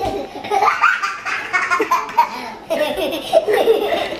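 A toddler laughing over and over in short bursts, cracking himself up.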